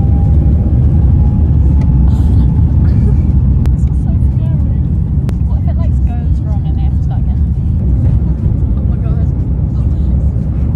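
Airliner cabin noise during takeoff: a loud, steady low rumble of the jet engines at takeoff power, with an engine whine rising in pitch near the start.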